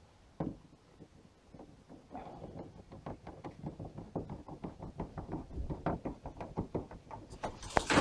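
A single knock, then a run of quick, irregular faint clicks and taps, several a second, that stop just before the end.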